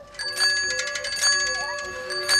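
Bicycle bell rung over and over: several quick strikes, then another about a second later, the metallic ring hanging on between them.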